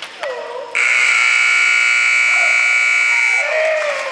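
Arena timing buzzer sounding one long, loud, steady electronic blast of about two and a half seconds, the signal that the cutting run's time is up.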